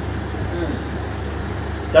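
Steady low rumble of background noise, with no strokes or changes in it.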